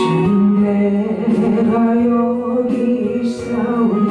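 Gospel music: keyboard accompaniment in an organ-like sound playing long held notes, with a sung melody over it.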